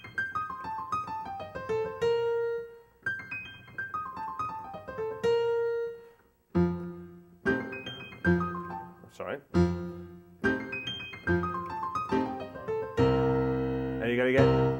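Piano playing a descending single-note lick in the right hand, twice over. It is then played with left-hand bass notes under it and ends on a fuller held chord.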